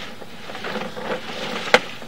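Sewer inspection camera's push cable being pulled back and reeled in, giving a low rubbing noise over a faint steady hum, with one sharp click about three-quarters of the way through.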